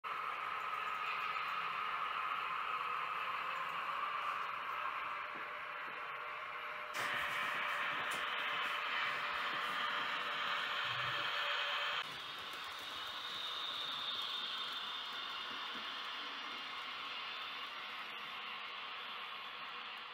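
Model railway trains running on the layout: a steady whirr of small electric motors and wheels rolling on the track, which jumps louder about seven seconds in and drops back about twelve seconds in.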